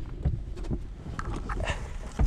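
Uneven low rumble of cabin noise inside a small Piper airplane, with scattered light knocks and rustling.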